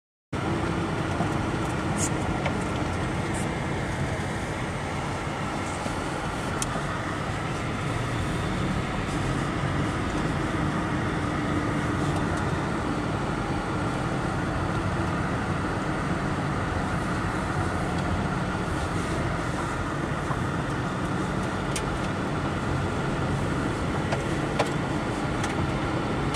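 Car driving along a snow-packed road: steady engine and tyre noise at an even level, with a few faint clicks.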